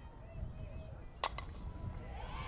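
Softball bat striking a pitched ball: a single sharp crack about a second in.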